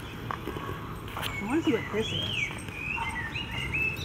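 Songbirds calling, a string of short chirps and rising and falling whistles starting about a second in, over the crunch of footsteps on a gravel path. A brief voice sounds about a second and a half in.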